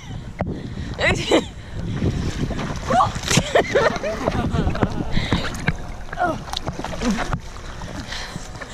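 Lake water splashing and sloshing against a camera held at the water's surface as a person slides across a floating foam water mat, with voices and laughter over it.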